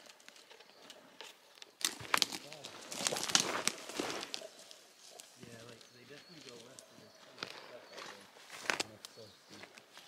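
Footsteps and dry scrub brushing and snapping against legs and a backpack as people walk through thick brush, with the loudest rustles about two to four seconds in. Faint talking in the background through the middle.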